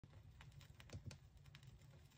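Faint vinyl surface noise: scattered crackles and clicks from the stylus riding the silent lead-in groove of an LP, over a low turntable rumble.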